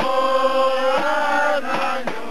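A group of men singing together, sliding up into one long held note of a carnival folk song. A few sharp knocks sound about a second in and again near the end.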